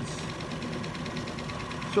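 Retsch PM 200 planetary ball mill running empty, with no grinding jars fitted, at 550 rpm: a steady mechanical hum with a constant higher whine over it.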